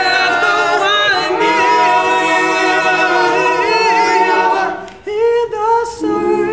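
All-male a cappella group singing: a lead voice over held chords from the backing singers, dipping briefly about five seconds in before the voices come back in.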